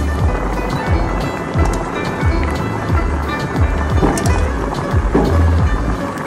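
Background music with a steady, deep beat of about two thumps a second under held tones.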